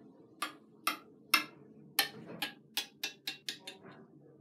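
A small plastic toy tapped again and again on a ceramic bathroom basin, making about a dozen sharp clicks. The clicks come faster toward the end.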